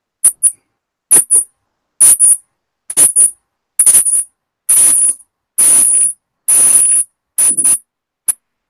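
Metallic jingling in about nine shakes roughly a second apart, each running a little longer than the last, with a bright high ring.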